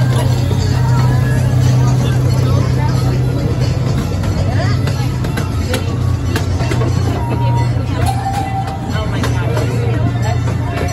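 Miniature amusement-park train running along its track, heard from an open passenger car: a steady low drone from its drive, with voices and music from the park around it.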